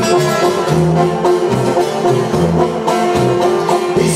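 Instrumental passage of live norteño-banda music: tuba playing a bouncing bass line of alternating notes under brass, drums and strummed acoustic guitar, with no singing.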